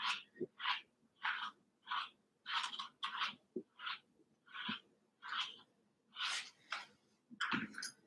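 Pin slicker brush raked through a Cavoodle's curly, conditioner-misted coat in short, scratchy strokes, roughly two a second.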